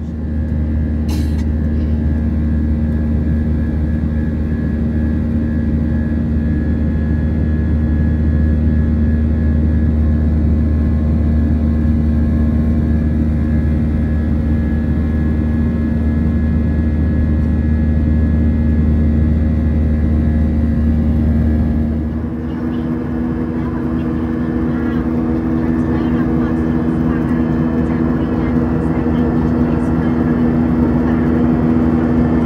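Jet airliner cabin noise heard at a window seat in flight: the turbofan engines and airflow give a steady loud drone with a low rumble and steady humming tones. About 22 seconds in the low rumble drops and the higher hum grows stronger. There is a brief click about a second in.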